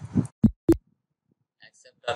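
Two quick keystrokes on a computer keyboard, about a quarter of a second apart.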